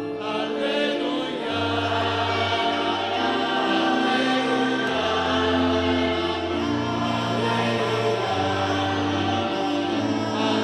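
Church choir singing a slow sacred chant with held low accompanying notes, the sung acclamation that comes just before the Gospel at Mass.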